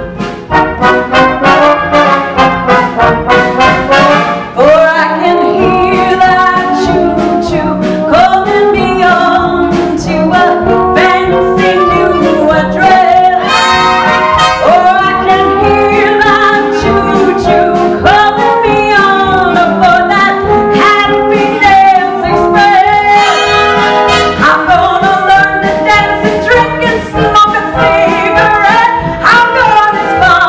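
Live pit orchestra of clarinets and brass playing a show-tune accompaniment, with a woman's singing voice carried over it.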